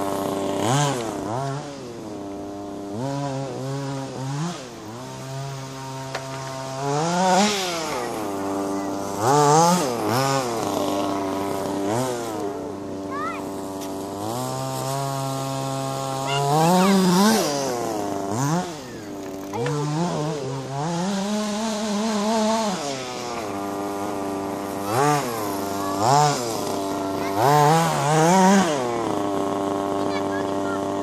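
Small nitro engine of a radio-controlled buggy running throughout, revving up and falling back repeatedly as it is driven, with a steadier run between the revs.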